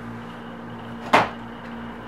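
A single sharp knock about a second in, over a steady faint hum.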